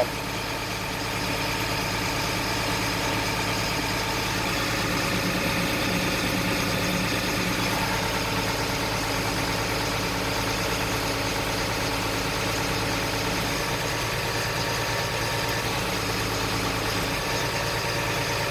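An FMTV truck's diesel engine running steadily at a raised hand-throttle idle with the PTO engaged, driving the winch as it reels its cable in, heard from inside the cab. The level steps up slightly about a second in, then holds even.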